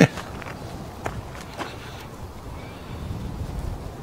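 A few soft footsteps on bare, freshly graded dirt, about half a second apart in the first two seconds, over a low steady background.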